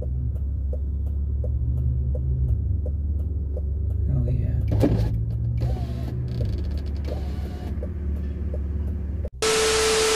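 BMW E36 320i's straight-six engine running low and steady at idle, heard from inside the cabin, with a faint regular ticking about two or three times a second. Near the end it cuts abruptly to loud TV-static hiss with a steady beep.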